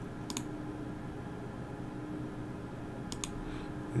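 Two computer mouse clicks, each a quick press-and-release: one just after the start and one about three seconds in. Under them is a faint steady hum of room tone.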